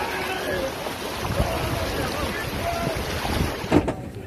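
Steady rush of a strong river current mixed with wind buffeting the microphone.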